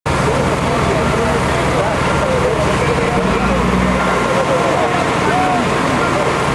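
Noise at a fire scene: a heavy vehicle's engine running under a loud, steady rushing hiss, with distant voices shouting.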